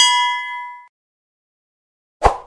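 A single metallic ding that rings with clear overtones and dies away within about a second.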